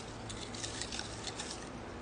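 Small folded paper slips rustling and crinkling as a hand picks through them in a glass tumbler: soft, irregular little ticks and crackles.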